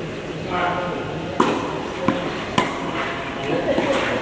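Tennis ball struck by rackets in a doubles rally: three sharp pops, about a second and a half, two seconds and two and a half seconds in, the first the loudest.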